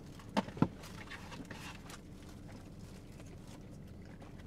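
Quiet eating and food-handling noises in a car cabin: two short, sharp clicks about half a second in, then a faint low hum with small scattered ticks.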